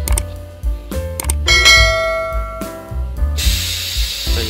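Background music with a steady beat, over which a few mouse-click sound effects are followed by a bright bell ding that rings and fades, the sound of an animated subscribe button. Near the end a rushing hiss of air starts as the hat blocking press begins to open.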